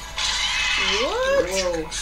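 Cartoon action sound from the episode: a rush of noise, then about a second in a wavering cry that rises and falls in pitch.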